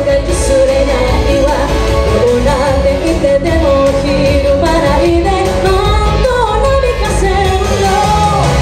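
A woman singing a pop song live into a microphone over loud, steady backing music.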